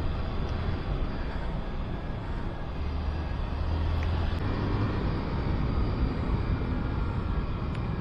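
Motor scooter riding along at a steady speed: a low, even engine hum under constant road and wind noise.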